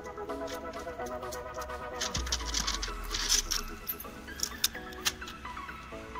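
Background music: a light melody of short stepping notes. About two seconds in, a burst of noise with a low rumble runs under it for a second or so.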